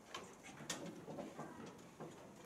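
Faint shuffling of a congregation sitting down, with a few sharp clicks and knocks. The loudest knock comes a little past a third of the way in.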